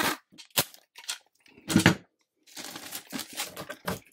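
Clear packing tape pulled off a tape-gun dispenser and laid across a cardboard mailer: a few short sharp tape screeches in the first two seconds, the loudest near the middle, then a run of rapid crackling as the tape is pressed and smoothed onto the cardboard.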